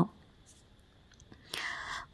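A pause between a woman's vocal phrases: near silence, then a soft, breathy in-breath starting about a second and a half in.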